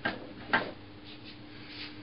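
Rider No. 62 low-angle jack plane taking two short, quick cuts on an oak board, about half a second apart, each a brief shaving swish of the iron through the wood, with fainter scrapes of the plane later.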